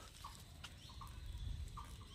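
Faint outdoor background: short, faint bird calls about once a second, with a thin steady high insect whine joining about a second in.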